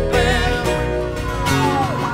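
Live acoustic band music: acoustic guitars strummed and picked, with a sung note wavering in pitch early on.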